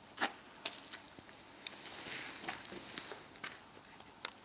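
Handling noises: a few scattered sharp clicks and knocks, the loudest about a quarter second in, over a faint quiet background.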